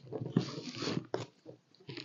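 Scissors scraping along the packing tape of a cardboard box: a rustling scrape lasting about a second, with a couple of sharp clicks, then a faint tap near the end.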